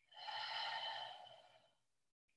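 One long audible breath out, rising quickly and then fading away over about a second and a half, taken while holding a yoga side-stretch.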